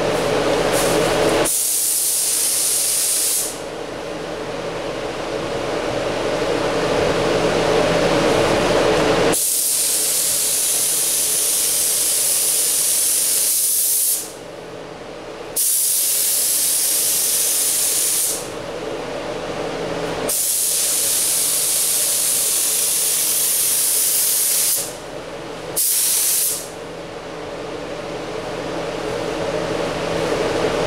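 Gravity-feed paint spray gun spraying base coat onto a car's hood: a loud hiss in five passes of one to five seconds each, with short pauses between them. A steady hum runs underneath.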